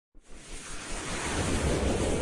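Whooshing sound effect of an animated logo intro: a wash of noise with a low rumble underneath that starts just after the beginning and swells steadily louder.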